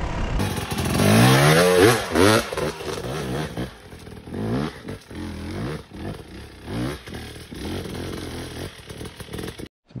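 Enduro dirt bike engine revving up and down in repeated bursts, its pitch rising and falling every second or so, as the rider climbs a steep rocky slope. It is picked up by a phone's microphone from below, and cuts off abruptly near the end.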